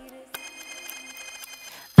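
A faint electronic telephone ring: a click about a third of a second in, then a cluster of steady high tones held for about a second and a half, in a break where the music stops.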